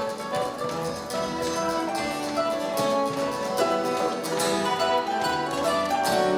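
Live acoustic ensemble of mandolin, harp and acoustic guitar playing a plucked instrumental tune, with notes changing quickly.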